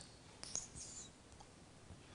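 Near silence: room tone, with a single faint click about half a second in.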